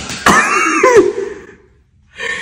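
A woman's burst of wheezy, cough-like laughter, about a second long, that dies away a second and a half in.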